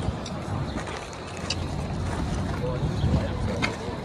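Open-air city ambience: a steady low rumble of wind on the microphone, with faint voices of people nearby in the second half and a few light clicks.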